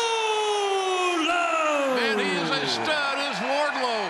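A ring announcer calling out the winner's name in one long, drawn-out shout that slowly falls in pitch, with a second voice joining about a second in and shorter calls near the end, over a cheering arena crowd.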